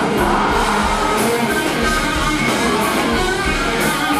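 Live rock band playing: electric guitars, bass and drums with repeated cymbal crashes.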